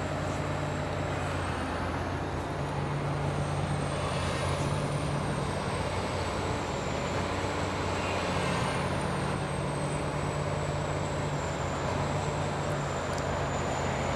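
Komatsu PC410LC excavator's diesel engine running steadily while its hydraulic boom, stick and bucket are worked, with a thin high whine that wavers slightly in pitch.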